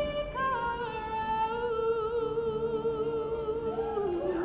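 An unamplified singing voice holds one long note, starting about half a second in with a small rise and wavering slightly, and cutting off at the very end.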